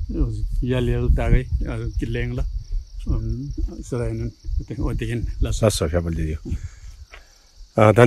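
A man talking in short phrases over a steady high-pitched drone of insects; the voice stops briefly near the end.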